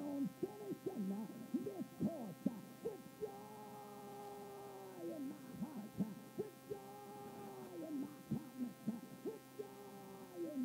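A congregation calling out in praise: many overlapping voices with short rising and falling cries and a few long held calls, none as clear words, over a steady hum in the recording.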